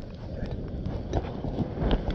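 Low wind rumble on a phone microphone, with irregular soft thumps of footsteps in sand.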